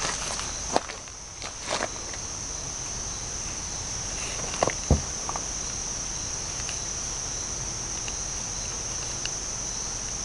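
Steady high-pitched chirring of insects such as crickets, with a few short sharp clicks or knocks, the loudest about five seconds in.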